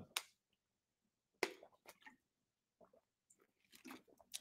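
Near silence broken by a few brief, faint clicks, the sharpest about a second and a half in.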